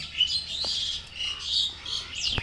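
Small birds chirping repeatedly in high, quick notes. A short sharp click comes just after the start.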